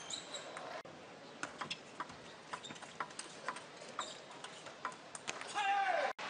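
Table tennis rally: the celluloid-type ball clicking off rubber-faced rackets and the table in quick, irregular succession. A brief falling cry comes near the end.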